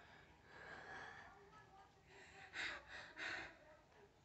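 A woman's heavy, noisy breathing during a stiff-person syndrome episode: faint breaths at first, then about three short, sharp breaths in quick succession past the halfway point.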